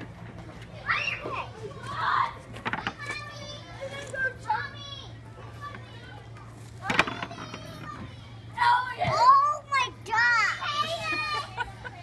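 Young children's voices chattering and calling out in short bursts, with a sharp click about seven seconds in as a toy putter strikes a mini-golf ball.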